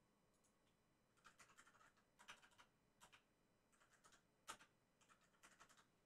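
Faint typing on a computer keyboard: quick runs of key clicks in several bursts, with one sharper keystroke about four and a half seconds in.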